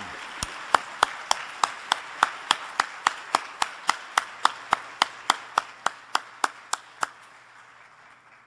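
Audience applauding, with one clapper close to the microphone clapping steadily about three times a second over the fainter applause of the room, which fades away toward the end.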